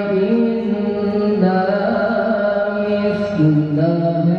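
A man reciting the Qur'an in the melodic tilawah style into a microphone: long held notes that slide and step between pitches, with ornamented turns between them.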